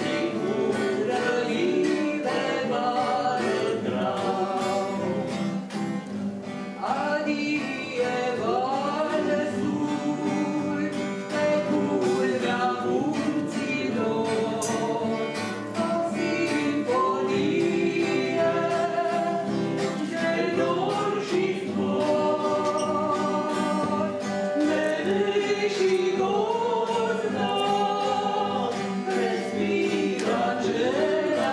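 A choir singing a song with instrumental accompaniment, the voices holding long notes without a break.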